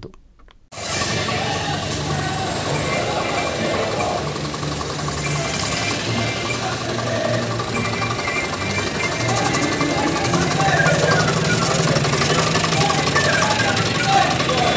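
A tractor's diesel engine running amid the noise of a street procession, with voices shouting over it. The sound cuts in suddenly about a second in, after a short quiet.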